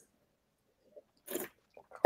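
Mostly quiet, with one brief, soft mouth sound of someone tasting about a second and a half in.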